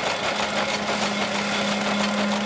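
Old wooden threshing machine running while cereal is fed through it: a steady mechanical hum with a dense rattle of straw and grain being thrown out.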